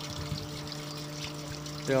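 Small 12-volt water pump humming steadily, with water trickling over a solar panel and dripping off its edge.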